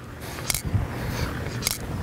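Saber golf trainer's internal timing mechanism dropping as the stick is spun behind the shoulders: two sharp clicks about a second apart, each a sign that the turn has gone all the way through.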